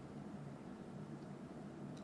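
Faint room tone, a steady low hum and hiss from the livestream microphone, with a brief click right at the start.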